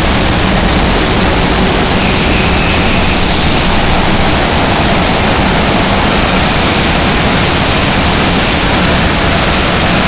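Harsh noise music: a loud, steady wall of distorted static that fills everything from low rumble to high hiss and does not change.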